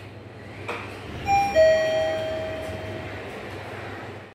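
Mitsubishi elevator arrival chime: two descending ringing notes, ding-dong, that fade over a second or two, with a click just before. Under it runs the steady low hum of the elevator machinery and the landing.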